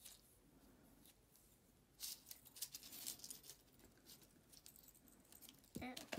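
Adhesive tape being pulled and wrapped around the plastic spoon handles of an egg shaker: a run of irregular crackly ticks that starts about two seconds in.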